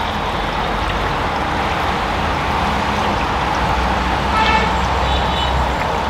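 Steady din of a street-side kitchen: traffic passing outside and a burner under a simmering pot of gravy. A short horn toot sounds about four and a half seconds in.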